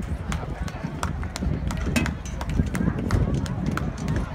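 Indistinct chatter of a crowd of people, over a steady low rumble, with many scattered sharp clicks and taps.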